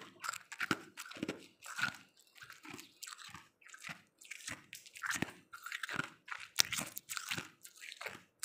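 Ice being chewed close to the microphone: a steady run of sharp, crisp crunches, about two a second.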